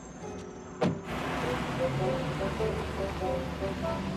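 A car door slams shut just before a second in. A steady rushing car noise follows, with soft background music underneath.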